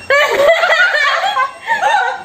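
Two women laughing hard in high-pitched fits of giggles, with a short dip about one and a half seconds in.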